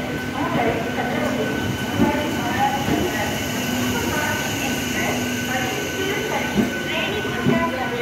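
Electric locomotive IR23001 and its coaches rolling slowly along a station platform, with a steady hum and a few brief knocks. Crowd voices chatter throughout.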